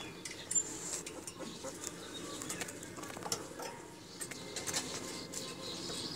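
Faint short bird chirps and scattered light clicks and taps over a steady low background noise.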